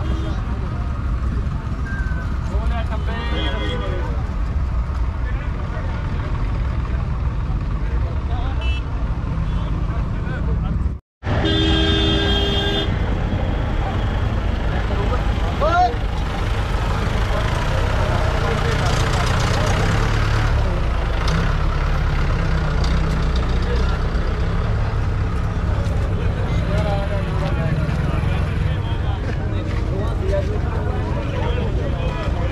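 Busy outdoor fair din: a steady low rumble of vehicle engines under crowd chatter. The sound cuts out for an instant about eleven seconds in, and a vehicle horn sounds for about a second just after.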